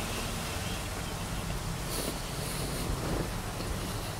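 Steady low rumble and hiss of background noise inside a parked car, with a few faint mouth and chewing sounds from eating a grilled chicken sandwich.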